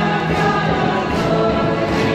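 A church congregation and worship team singing a gospel song together in chorus, with band accompaniment and a steady drum beat.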